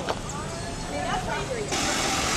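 Street ambience with faint voices of passers-by and traffic noise. About three-quarters of the way in it jumps suddenly to a louder, steady hum of vehicle noise.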